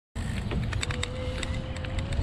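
Dead silence at a cut, then the sound of riding a bicycle along a tarmac path. Low tyre and wind rumble with scattered sharp clicks, and a faint steady whine from about halfway in.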